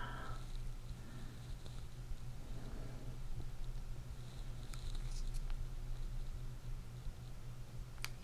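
Quiet room tone with a steady low hum, and a few faint ticks about five seconds in.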